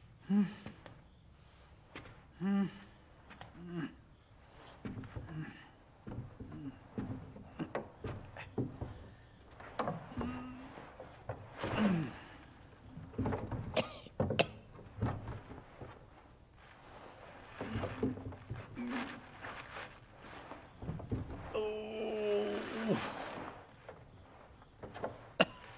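An old man's wordless grunts, groans and sighs, a string of short ones with a longer groan near the end, mixed with soft knocks and rustling as he is helped into bed.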